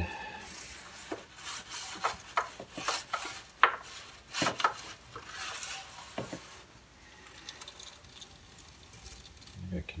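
A dryer lint brush scrubbing inside the composite runners of a Hemi 5.7 intake manifold soaking in a tub of cleaning solution. It makes irregular scraping, knocking and wet swishing, busiest for the first six seconds or so and quieter after.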